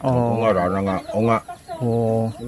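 A man's voice talking in drawn-out phrases, in three stretches with short pauses between them.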